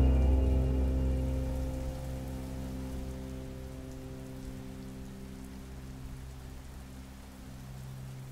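Steady rain falling, as a sound effect, over a low sustained music drone that fades down over the first two or three seconds and then holds quietly.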